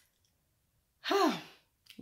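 A woman's voiced sigh about a second in, breathy and falling in pitch, lasting about half a second.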